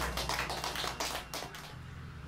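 A short pause in a live rock set: the band's last chord rings out and fades, under a scatter of sharp, irregular taps or claps.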